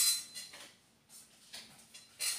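Playing-size oracle cards being gathered and handled: a short papery swish of cards sliding together at the start, then a few faint rustles.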